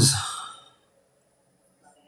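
A man's voice trailing off into a breathy sigh that fades out within about half a second, followed by near silence.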